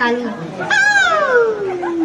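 A boy imitating an animal call with his own voice: after a brief word, one long pitched cry begins just under a second in and falls steadily in pitch, meow-like.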